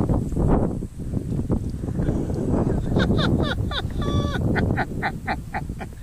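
Water splashing and churning as a large crappie thrashes beside the boat and is lifted out by hand. In the second half comes a run of short high-pitched calls, the last of them evenly spaced at about five a second.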